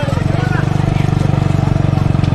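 Motorcycle engine running steadily close by, a fast even pulsing, with men shouting over it.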